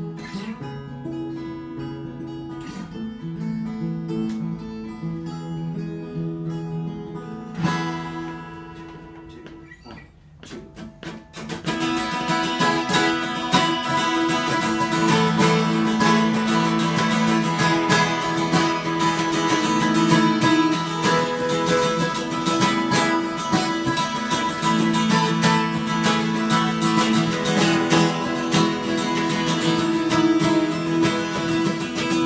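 Two Taylor acoustic guitars played together, the tuning a bit off: quieter playing at first, a brief lull about ten seconds in, then fuller, louder strumming.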